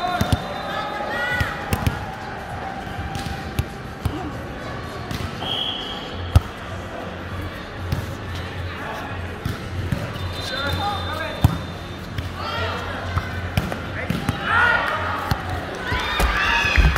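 Volleyball being hit and landing in sharp, scattered smacks, the loudest about six seconds in, among players' calls and shouts in a large hall.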